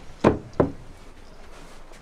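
Two sharp knocks about a third of a second apart as a detachable boat steering wheel is handled.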